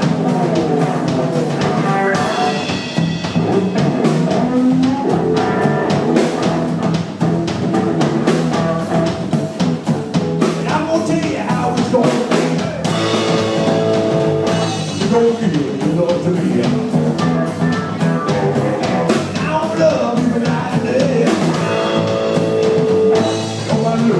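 Live rock-and-roll band playing: hollow-body electric guitar over bass guitar and a drum kit, with a steady beat.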